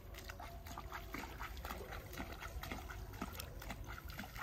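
Rice seedlings being pushed by hand into the mud of a flooded paddy: quiet, irregular small splashes and wet squelches of water and mud.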